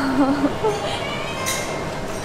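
A woman's drawn-out word trailing off, then the room noise of a busy restaurant with faint voices. A brief sharp noise comes about one and a half seconds in.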